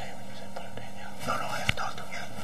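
Quiet whispered speech over a steady low electrical hum and hiss, with one sharp click late on.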